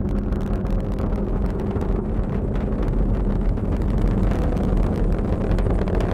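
Distant roar of a SpaceX Falcon 9 rocket's first stage, its nine Merlin engines under full thrust during ascent, heard as a steady low rumble.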